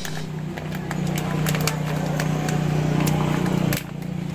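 A nearby engine running at a steady pitch, growing a little louder and then cutting off abruptly near the end, with faint clicks over it.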